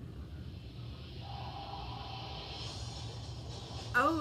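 Faint television audio playing in the background, with some music in it, over a steady low hum.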